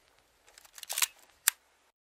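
A few short, sharp clicks: a small cluster of them about a second in and one single click about half a second later, then dead silence.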